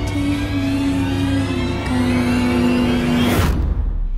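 Trailer score of sustained low held notes changing pitch slowly, swelling into a rising whoosh that cuts off abruptly about three and a half seconds in.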